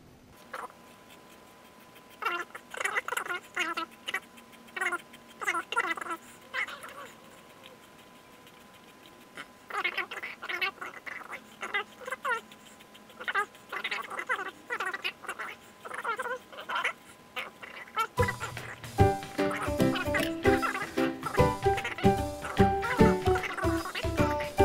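Zucchini squeaking as it is twisted by hand through a handheld Veggetti spiral vegetable slicer: runs of short squeaks with pauses between turns. About three quarters of the way through, background music with a steady beat comes in.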